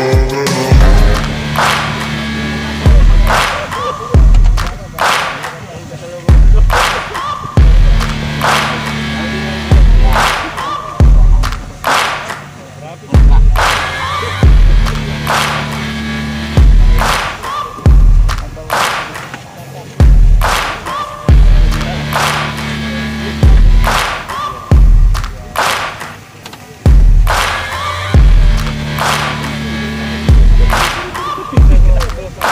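Background music with a steady, heavy beat of deep kick drums, sharp snare hits and a bass line.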